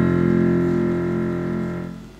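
A keyboard playing the opening of a hymn: one long held chord that slowly fades and stops near the end.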